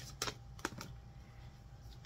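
A deck of cards shuffled by hand: a few sharp clicks and flicks of cards in the first second, then quieter handling.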